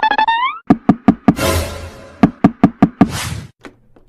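Cartoon sound effects: a brief rising, warbling tone, then a string of sharp, uneven knocks, as on a wooden door, with two short bursts of hiss among them.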